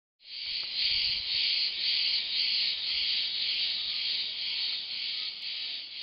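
A dense, steady high-pitched chirring hiss with a faint regular pulse, insect-like in character.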